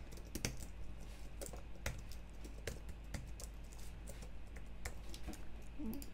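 Typing on a computer keyboard: irregular, fairly faint key clicks as code is entered, over a steady low hum.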